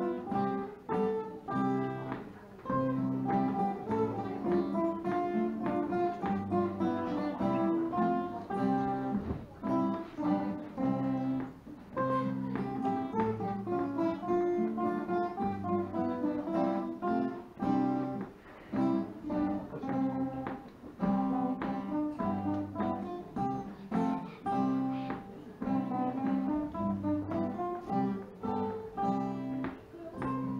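Several acoustic guitars playing a tune together: a melody of plucked notes over chords and low bass notes, in a steady rhythm.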